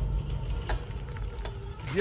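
Trailer sound design: a deep, steady low rumble with a sharp tick recurring about every 0.8 seconds. A man's voice starts right at the end.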